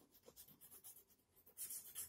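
Faint scratching of yellow chalk on a blackboard in short repeated strokes as an area is coloured in, becoming more distinct near the end.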